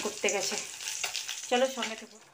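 Food sizzling in a frying pan: a steady crackling hiss.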